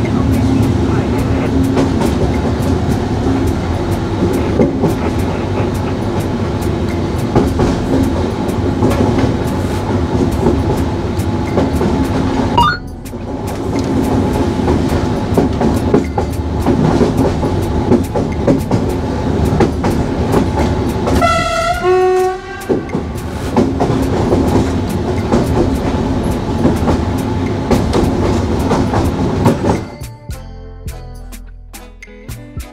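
Electric passenger train running at speed, heard from the driver's cab: a steady rumble with rail clatter. About two-thirds of the way through a horn sounds for about a second and a half, its pitch falling.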